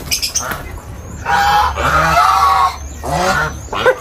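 Domestic geese honking loudly: a long drawn-out call in the middle, then a shorter call near the end.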